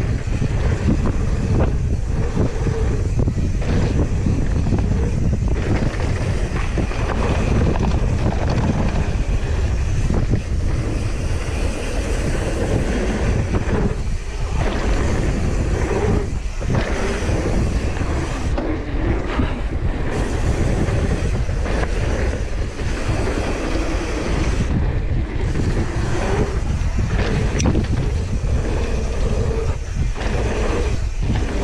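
Mountain bike descending a dirt flow trail: steady wind rushing over the action-camera microphone, with the rumble and rattle of tyres and bike over the bumpy trail.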